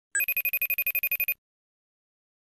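Incoming-call ringtone: a single rapid trill of about a dozen even pulses a second, lasting just over a second before it stops.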